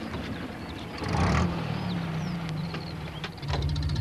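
Small delivery van engine running as the van pulls up, swelling about a second in and then settling into a steady low idle.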